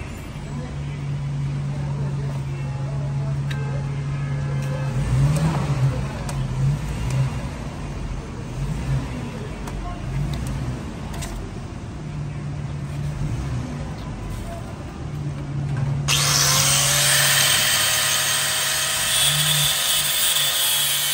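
Low steady background hum with a few metal clinks as the motorcycle drive chain is handled. About sixteen seconds in, a small angle grinder starts up, its pitch rising as it spins up, and then grinds through the steel chain at the rear sprocket.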